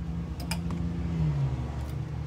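A steady low mechanical hum whose pitch dips about a second and a half in, with a few light clicks of clothes hangers on a rail about half a second in.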